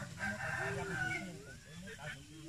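Male silver pheasant calling close by, a run of short calls in the first second and a brief rising call near the end.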